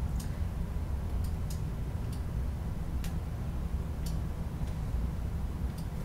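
About eight light clicks, irregularly spaced, from a computer pointing device as a brush is tapped repeatedly onto an image, over a steady low hum.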